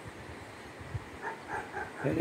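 Steady faint outdoor hiss with a soft low thump about a second in, then faint distant voice-like sounds in the second half.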